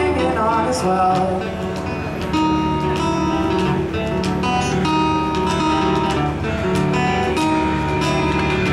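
A live band playing an instrumental passage: strummed acoustic guitar, drum kit and accordion, with long held notes from about two seconds in.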